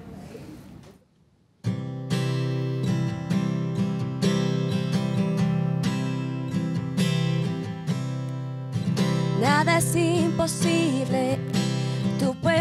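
Steel-string acoustic guitar strummed live, starting the song's intro suddenly after a second or so of near silence. About nine or ten seconds in, a woman's voice comes in singing over the guitar.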